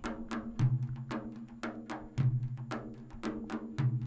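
Frame drums playing a steady rhythm in an instrumental passage between sung verses: light strokes about four a second, with a deeper, ringing bass stroke about every one and a half seconds.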